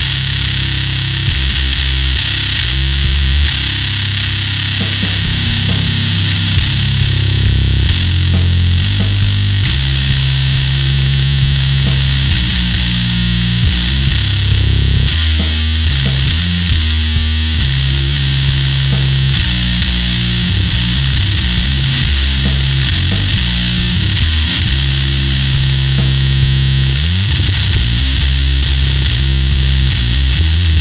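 Fender Precision Bass played through a Magic Pedals Conan Fuzz Throne fuzz pedal into a Darkglass amp: a slow, heavy riff of long held low notes with thick, buzzy fuzz distortion.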